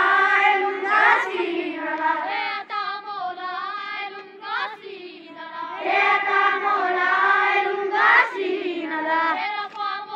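A group of schoolchildren singing a morning prayer together in unison, in long phrases that swell and fade.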